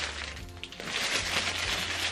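Plastic packaging crinkling as a bagged item is handled, over quiet background music with a steady bass line.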